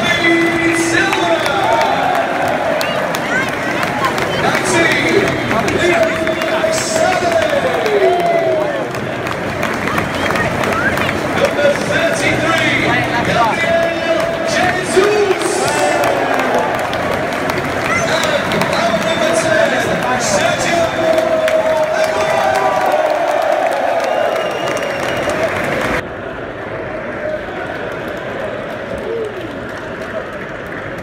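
Large football stadium crowd cheering and singing, with an amplified voice over the stadium sound system, during the pre-match player introductions. About 26 seconds in it cuts off suddenly, giving way to quieter background noise.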